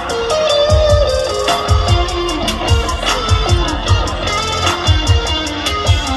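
Amplified live band playing: an electric guitar picks out a melodic lead line over a steady kick-drum beat.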